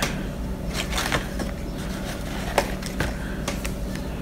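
A few light clicks and taps as a toothbrush is dipped and worked into a small jar of activated charcoal tooth-whitening powder, over a faint steady hum.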